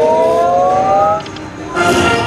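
Video slot machine sound effects: a rising three-tone sweep that ends a little past a second in, a brief dip, then near the end a bright burst of chiming bell tones, the win jingle for the free-games payout.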